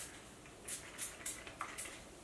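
Hairspray being sprayed in a quick run of short hisses, about five in a second or so, starting a little under a second in.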